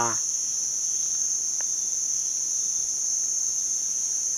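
Insects in the trees keeping up a steady, unbroken high-pitched drone, with a faint click about one and a half seconds in.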